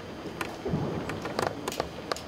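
Scattered clicks and knocks as a seated concert band handles its instruments and stands between pieces, with no music playing, and a low thump about a second in.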